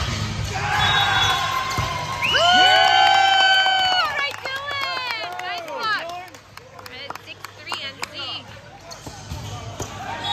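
Wordless cheering in a gym after a volleyball point: one long loud held yell about two seconds in, then several shorter whoops. After that, scattered sharp claps and slaps.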